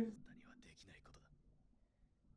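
Faint speech low in the mix for about the first second, then near silence.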